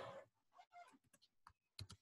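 Near silence on a video call: a short soft rush of noise at the start, then a few faint, scattered clicks, like keys being tapped.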